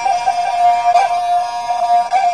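Tai Lue khap music: a reedy wind instrument holds one steady melody note, decorated with quick ornamental turns.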